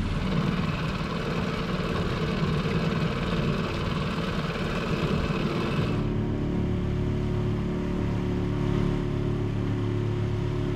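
Small 5 hp four-stroke outboard motor running steadily at cruising speed, under a rushing noise of wind and water for the first six seconds. About six seconds in the rushing stops abruptly, leaving the engine's steady low hum.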